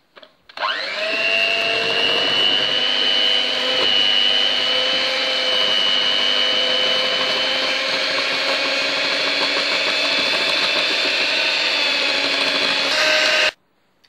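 Electric hand mixer running at a steady speed, its beaters whisking red velvet cake batter as milk is beaten in. The motor whine starts about half a second in, rising briefly in pitch as it spins up, and cuts off suddenly just before the end.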